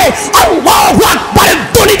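A man shouting a sermon into a microphone in short, rapid, forceful phrases, his voice loud and strained.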